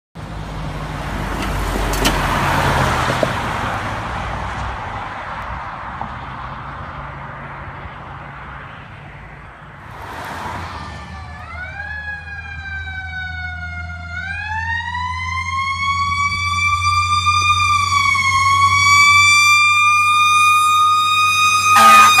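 Road traffic passing, a truck going by near the start. From about 11 seconds in, a fire engine's siren winds up into a slow rising and falling wail that grows louder as the truck approaches.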